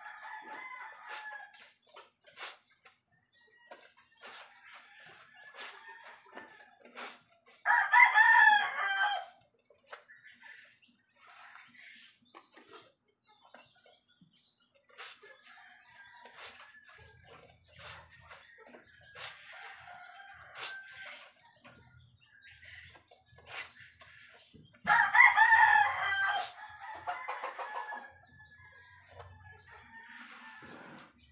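Rooster crowing twice, each crow about a second and a half long and the loudest sounds here, one near the start of the second third and one near the end, with quieter clucking and short soft clicks in between.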